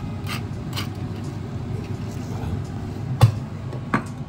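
A pepper mill being twisted over a pan of seared beef, with a couple of short grinding crackles in the first second, over a steady low hum. About three seconds in comes one sharp knock, the loudest sound, like the mill being set down on the counter, followed by a smaller click.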